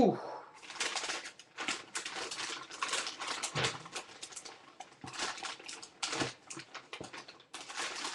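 Paper packing being handled and pulled open: irregular rustling and crinkling with short pauses.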